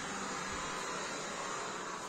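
A steady, even hiss with a faint low hum underneath.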